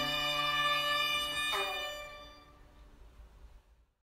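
Electric violin music in a rock arrangement: a held chord, one last note struck about a second and a half in, then the music fades out to near silence.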